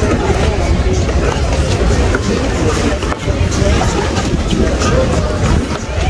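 Background chatter of several people talking over a steady low rumble.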